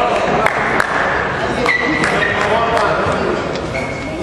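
People talking in a large sports hall, with a couple of sharp taps about half a second in.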